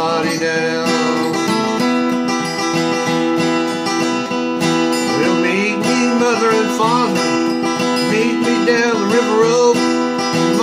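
Steel-string acoustic guitar strummed steadily, with a partial capo across five strings that leaves the low E string open to drone under the chords. A man's voice sings along over roughly the second half.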